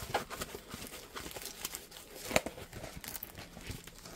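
Diamond painting canvas with its thick plastic cover sheet being handled and unrolled, giving soft, irregular crinkling and crackling.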